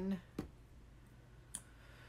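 Two short clicks of small plastic liquid-eyeshadow tubes being handled, about a second apart, the first the louder.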